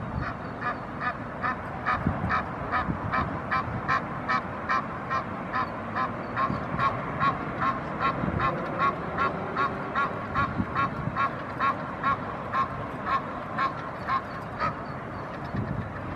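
Egyptian goose calling: a long, even series of short honks, about two a second, that stops about a second before the end.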